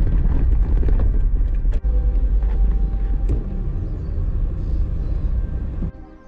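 A car driving along a road, heard from a camera mounted on the car: a steady low rumble of engine and road noise with a few faint knocks. It cuts off suddenly at the very end.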